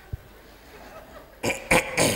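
A man's short non-speech vocal sounds in the last half second: a few quick bursts, then a falling voice. A small click comes just after the start.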